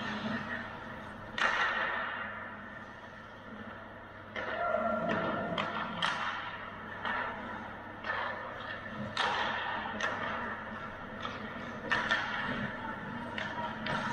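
Ice hockey play in an indoor arena: a dozen or so scattered clacks of sticks and puck and scrapes of skates on the ice, each trailing off in the rink's echo.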